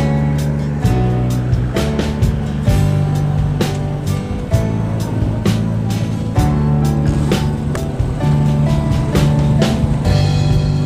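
Background music with a steady beat of about two strokes a second over sustained bass and melody notes.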